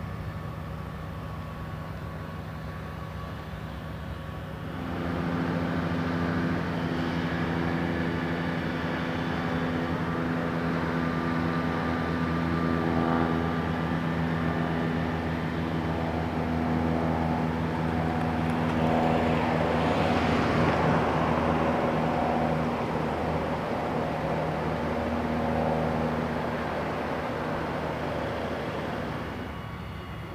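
A motor engine running steadily with a low hum, louder from about five seconds in. It swells and gets noisier about two-thirds of the way through, then drops off just before the end.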